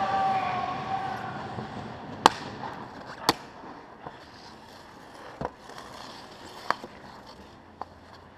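Sharp cracks of a hockey puck being struck and hitting on the ice rink: two loud ones about two and three seconds in, then a few fainter ones spaced a second or more apart, over a steady rink hiss. A drawn-out shouted call fades out at the start.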